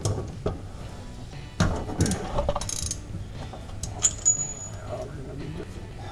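Metal hand tools clinking and rattling against an engine, a series of sharp taps with a busier clatter about two seconds in. Near the end a tap leaves a short high metallic ring.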